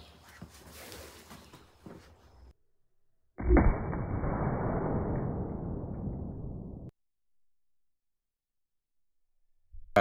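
Slowed-down slow-motion replay of a .300 Blackout rifle shot into a ballistic gel block. A sudden deep boom comes about three and a half seconds in, then a long muffled rush that fades for about three seconds and cuts off abruptly. Before it there are faint handling clicks at the shooting bench.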